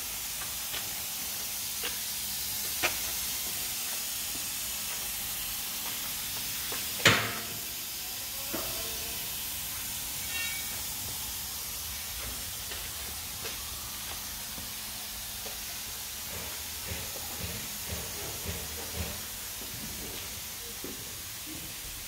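Air-fed spray gun hissing steadily as it sprays underbody coating onto a car's underside, with a few sharp clicks, the loudest about seven seconds in.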